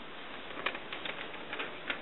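A folded paper map being pulled from a book and opened out: a few faint, short crackles of handled paper.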